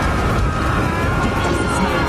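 A loud, steady low rumble of fire in a film sound mix, under dramatic score, with a man's drawn-out pained cry.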